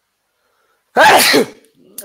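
A man sneezing once, loudly, about a second in; the sneeze lasts about half a second.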